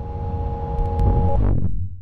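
Outro sound design: a deep synthesized rumble swelling under a held two-note synth tone. The tone cuts off about two-thirds of the way in, and the rumble fades out near the end.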